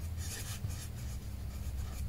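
A pen writing on a notebook page: faint strokes of the tip on paper.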